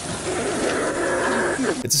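Grainy, low-quality recording of air rushing and whistling through a man's cut windpipe, a hoarse hiss with a strained, groaning voice under it, cutting off abruptly near the end.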